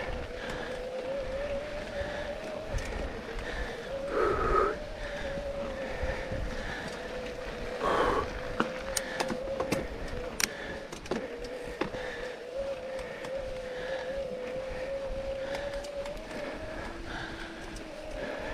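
Bikes grinding up a steep dirt trail: a steady, slightly wavering mechanical whine that stops near the end. Scattered clicks and rattles run through it, with two brief louder sounds about four and eight seconds in.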